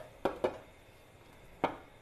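White ceramic lid being set onto a ceramic pot: two light knocks in the first half second, then a sharper clunk about three-quarters of the way through as it seats on the rim.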